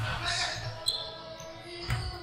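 A basketball bouncing on a hardwood gym floor: a couple of sharp thuds, one about a second in and a louder one near the end, heard in a large hall.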